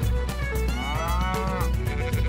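A cow mooing once, a single call of about a second that rises and then falls slightly, over theme music with a steady beat.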